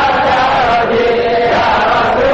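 Several men's voices chanting together in unison in long, drawn-out notes that drop in pitch about a second in and rise again near the end.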